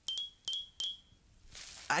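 Cartoon chime sound effect: three quick bright tings on the same high pitch, each a sharp strike that rings briefly, all within the first second.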